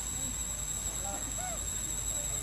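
Outdoor ambience of a steady high-pitched insect drone, with a few faint short rising-and-falling calls about a second in.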